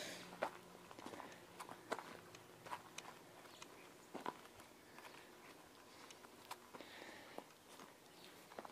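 Faint, irregular footsteps and small crunches on dry, gravelly ground, with a soft hiss near the end.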